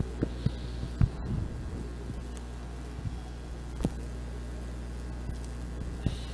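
Room tone of a sports hall with a steady low electrical hum, broken by a few faint scattered knocks, the clearest about a second in and again near four seconds.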